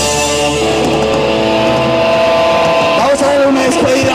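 A live punk band holds a ringing, sustained chord. About three seconds in, voices start shouting and singing over it.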